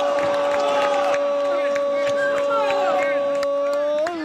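Football TV commentator's long, held goal shout, a sustained 'goool' on one unwavering pitch, loud over faint crowd and player shouts, breaking into speech right at the end.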